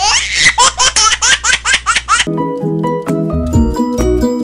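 High-pitched laughter in quick bursts, about six a second, that cuts off abruptly a little over two seconds in. It gives way to cheerful music with plucked pitched notes and a steady beat.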